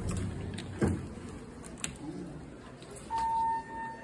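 A thump just before a second in, then a Thyssenkrupp elevator's electronic chime: one steady single-pitched tone that sounds about three seconds in and lasts about a second and a half.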